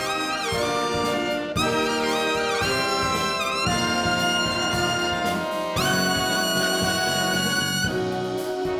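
Big band brass section playing a jazz passage, led by a lead trumpet. The opening notes are scooped and bent, and the section then sets into long held chords for the second half.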